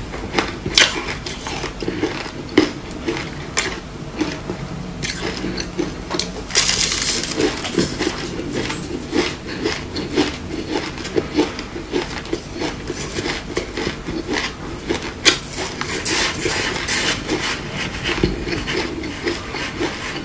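Close-miked crunching and crackling of crushed frozen ice being chewed and scooped with a wooden spoon from a bowl: a continuous run of sharp crunches, with denser scraping bursts about seven seconds in and again past the middle.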